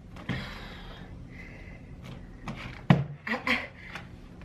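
Hands working the latch of a white hard plastic drone case that is stuck and won't open: small knocks and handling rustle, with one sharp plastic snap about three seconds in, the loudest sound.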